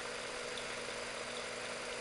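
Freshly assembled, modified Visible V8 model engine running at a steady speed: an even, unchanging mechanical hum with a couple of steady tones in it.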